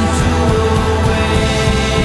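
A rock band playing live: a drum kit struck hard and fast with cymbal crashes, under held chords.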